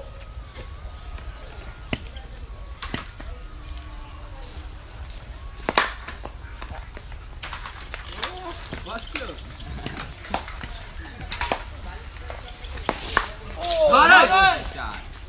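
Open-field ambience at a village cricket game: a steady wind rumble on the microphone, faint distant voices of players, and a handful of sharp knocks, the loudest about six seconds in.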